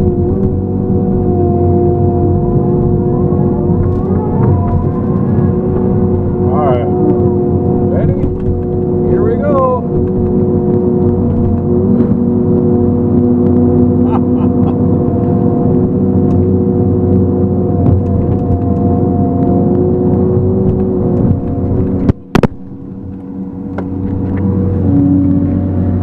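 Feller buncher's diesel engine and hydraulics running steadily under load, with its disc-saw felling head working at a tree. A few short rising and falling whines come a quarter to a third of the way in. The sound drops out sharply for a moment near the end, and the hum then settles at a different pitch.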